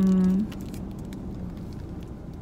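A woman's drawn-out word ends about half a second in. After that there is only a low, steady car-cabin background with a few faint crinkles of a plastic food wrapper being handled.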